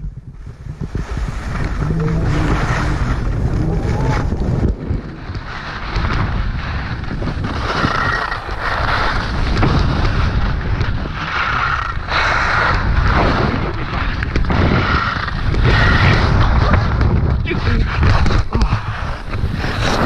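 Wind buffeting a helmet-mounted action camera's microphone during a ski run, mixed with skis sliding and scraping over hard-packed snow. The scraping comes in surges every few seconds through the turns.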